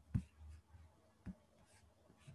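Two faint clicks about a second apart on a quiet call line, with a low hum fading out in the first half-second.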